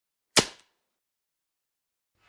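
A single sharp whack about a third of a second in, dying away within a quarter second.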